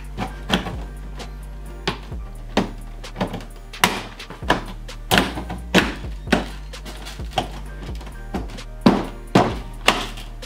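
Repeated thunks and knocks as a Ford Focus ST's plastic front grille is pressed and snapped back into the bumper by hand, with background music under it.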